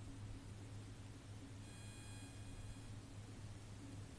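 A faint electronic beep, about a second and a half long, over a steady low hum.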